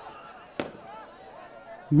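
Low murmur of a large outdoor crowd in a pause of the amplified speech, with one sharp crack a little over half a second in.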